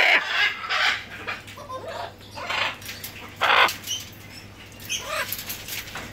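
Military macaw giving a series of short, harsh squawks, the loudest about three and a half seconds in, with light clicks between them.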